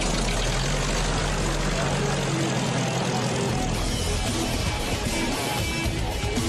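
Soundtrack music over a steady vehicle engine rumble, a dense noise at an even level throughout.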